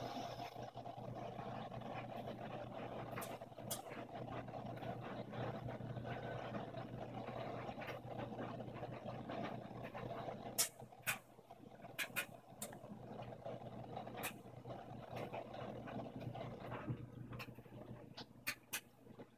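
Brastemp front-loading washing machine tumbling a wet bedding load: a steady motor hum under the swish and slosh of water and fabric in the drum, with sharp clicks now and then. The tumbling sound falls away near the end.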